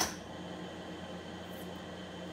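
A single short click of plastic poker chips set down into a chip rack, followed by a steady low hum of room tone.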